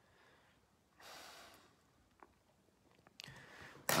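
A man breathing close to the microphone: a soft breath out about a second in, and a breath in near the end just before he speaks, with a couple of faint clicks between.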